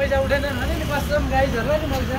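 People's voices talking, not clearly worded, over a steady low rumble of street traffic.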